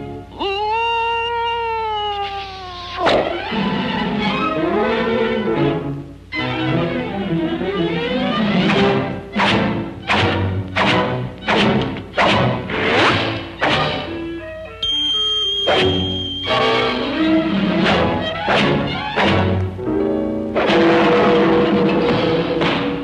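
Orchestral cartoon score punctuated by many sharp hits and thumps. Near the start a tone rises and then falls, and about fifteen seconds in a high steady tone holds for a moment.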